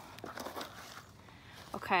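Faint crinkling rustle of a clear plastic bag being handled, mostly in the first second.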